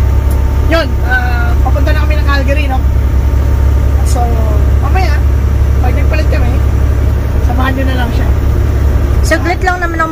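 Steady low drone of a semi truck's engine and road noise heard inside the cab while driving on the highway, with people talking over it.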